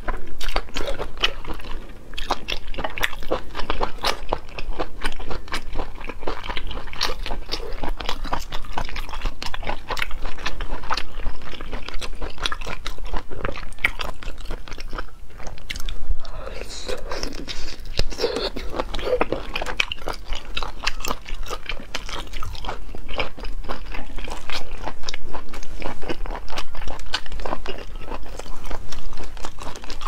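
Close-miked mouth sounds of someone biting and chewing sea snail meat: dense, irregular sharp clicks and wet smacks.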